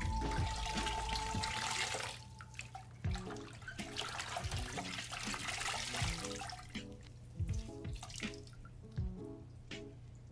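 Water sloshing and splashing in a bucket as dirty canister-filter foam pads are swished and rinsed by hand. It is heaviest for the first two seconds and again from about three to seven seconds in.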